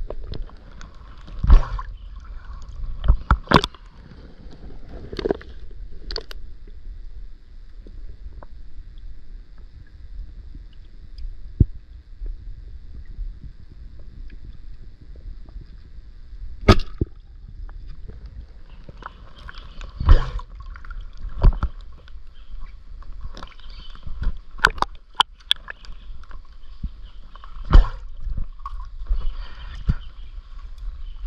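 River water heard through a submerged camera: a steady low, muffled rumble with gurgling, broken by about a dozen sharp knocks and clicks at irregular moments.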